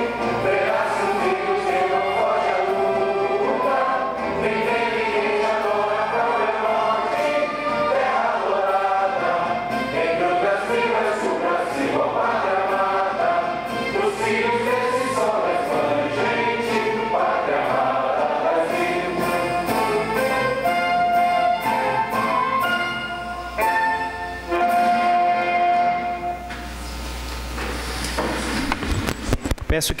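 Recorded anthem sung by a choir with orchestra, closing on a long held note about 26 seconds in and then stopping.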